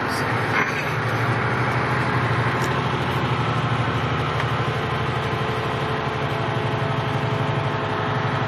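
Semi truck's diesel engine running steadily at low road speed, heard from inside the cab as an even low drone.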